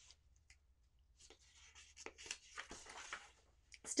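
Faint, irregular rustling and crinkling of paper as a picture book's pages are handled and turned, lasting about two seconds in the middle.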